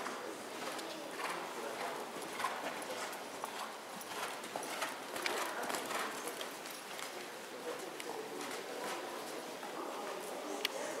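A horse trotting, its hoofbeats landing on the sand footing of an indoor riding arena as a run of soft, repeated impacts.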